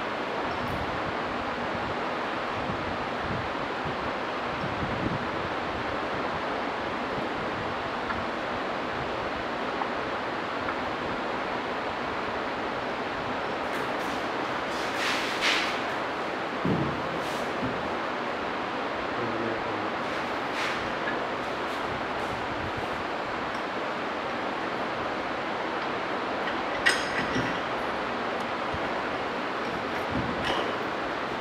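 A steady hiss of background noise, with a few light clinks and knocks from the metal top cap and fittings of a constant-head permeameter mould being handled and fitted, the sharpest a little before the end.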